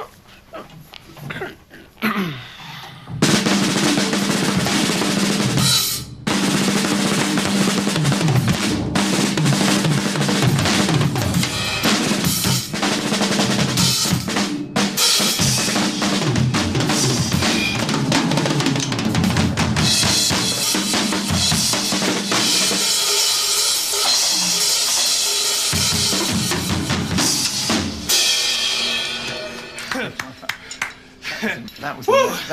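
Solo drum kit played loudly, bass drum, snare and cymbals in a dense, busy pattern that starts about three seconds in, breaks off briefly, then runs on. Near the end the cymbals ring heavily before the playing stops.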